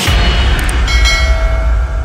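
Logo intro sting: a sudden deep booming hit with a long low rumble, joined about a second in by bright bell-like ringing tones.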